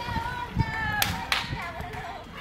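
Hand claps, two sharp ones about a third of a second apart, over steady, slightly wavering high-pitched tones.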